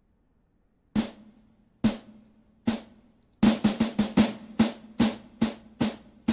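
The drum intro of a song: after a second of silence, three single drum strikes about a second apart, then a quicker run of drum hits from about halfway through.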